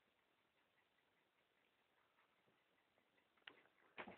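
Near silence: room tone, with one brief faint click about three and a half seconds in.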